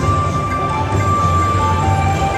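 Video slot machine playing its electronic bonus-round music as the reels spin on a free game, with long held tones over a steady low rumble of the casino floor.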